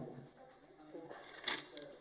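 A person's voice speaking a question, with a short knock right at the start.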